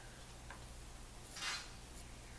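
Faint handling sounds as a plastic trim ring is fitted around a studio monitor's woofer: a small click about half a second in and a short scrape about a second and a half in.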